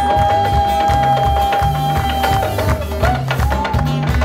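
A live band playing a song, with a stepping bass line and crisp percussion strokes. A long held high note runs over them and ends a little past halfway.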